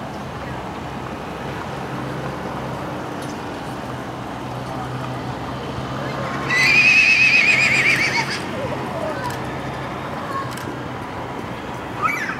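A horse whinnying once, about halfway through: a loud, high, quavering neigh of about two seconds that trails off falling in pitch.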